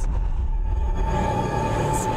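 Ominous horror-film soundtrack: a low rumbling drone under a steady sustained tone, with a hiss swelling toward the end.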